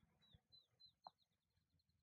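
Near silence with a faint bird song: a run of short, high, downward-slurred notes that come faster and fade away over about a second and a half.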